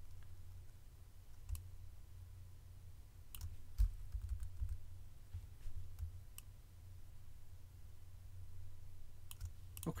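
A handful of scattered, separate clicks from a computer mouse, over a steady low hum.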